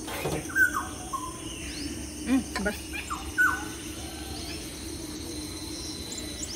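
Birds calling outdoors: two loud descending whistled calls, about half a second in and again at about three and a half seconds. Between them come a couple of short knocks, over a steady low hum.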